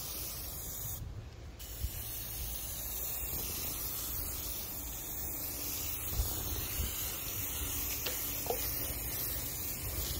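Aerosol spray-paint can hissing steadily as paint is sprayed in passes, with a short break about a second in.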